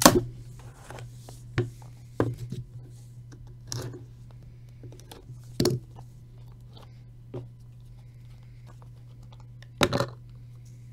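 Handling sounds as a trading-card box lid is lifted off and the pack inside is torn open: a handful of short, sharp rustles and knocks, the loudest right at the start and another just before the end. A steady low hum runs underneath.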